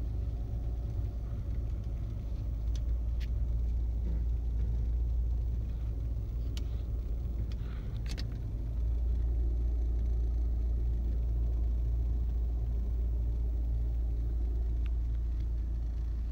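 Steady low rumble of a car heard from inside the cabin, growing a little louder about nine seconds in, with a few faint clicks.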